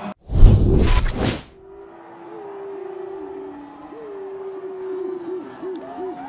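A loud whoosh transition sound effect, rushing for just over a second, marks an edit cut between plays. It is followed by quieter held and wavering musical notes.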